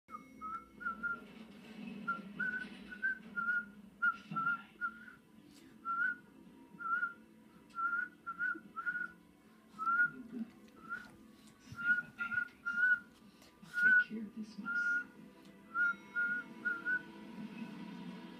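A person whistling a long series of short, chirpy notes, all at about the same pitch, roughly two a second in irregular groups with brief pauses between them.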